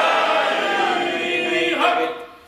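A group of voices singing a devotional Urdu refrain together, stopping just before the end.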